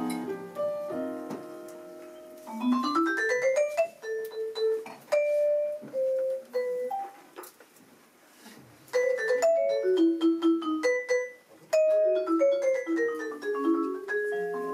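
Vibraphone and piano playing jazz. Chords fade away at the start, then comes a quick rising run and a sparse melody of single ringing notes. After a near-quiet pause about eight seconds in, faster descending phrases of mallet strokes follow.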